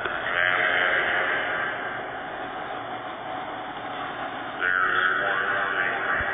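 Two screeching, Godzilla-style monster roars. A long one comes at the start and a second about four and a half seconds in.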